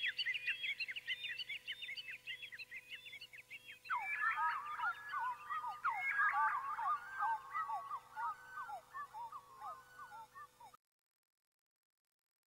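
Birds chirping in a rapid, dense run of short calls. About four seconds in, the chirping shifts to a lower pitch, and near the end it cuts off abruptly into silence.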